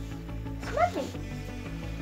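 Quiet background music with a steady low beat, and a single short cry about three-quarters of a second in that rises and then falls in pitch.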